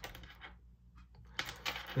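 Small metal trout spoons clicking and clinking against each other as they are picked through by hand: one sharp click at the start, then a quick run of clicks near the end.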